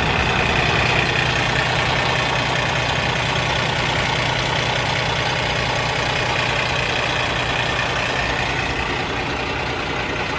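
Cummins ISX diesel engine idling warm, heard close up at the open engine bay, a steady run with a high whine above the diesel note. It grows a little fainter near the end.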